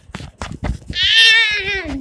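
A child's high-pitched, quavering cry, much like a goat's bleat, starting about a second in and falling in pitch at the end. It follows a quick run of knocks and rubbing from the phone being handled.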